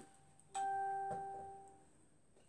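A single bell-like chime struck about half a second in, ringing out and fading away over about a second and a half.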